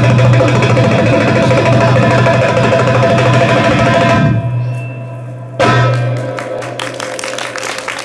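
Live darbuka (Arabic tabla, a goblet hand drum) playing a belly-dance drum solo: a fast, dense roll over a steady low drone, which breaks off about four seconds in. After a short lull one sharp strong hit comes, then a few separate strokes that ring out.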